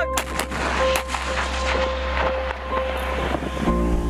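Artillery firing: a quick series of sharp blasts in the first second, followed by a rushing noise that dies away near the end, over steady background music.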